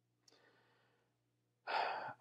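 A man's faint breath, a soft breathy sigh, in a pause in his talk. Near the end his voice comes back in with an 'um'.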